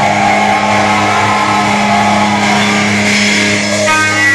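Death metal band playing live and loud: distorted electric guitars hold a low droning chord over a dense, noisy wash of drums and cymbals. Near the end a new riff of picked notes begins.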